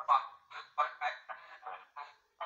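A spirit box app on a tablet sweeps out choppy voice-like fragments through the tablet's small speaker, chopped about four times a second and thin, with no bass. The user captions it as a spirit voice saying "I'm dying, I need some help".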